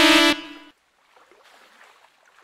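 Race starting horn giving the start signal at the end of the countdown: one steady tone with many overtones that cuts off about a third of a second in, leaving a short echo.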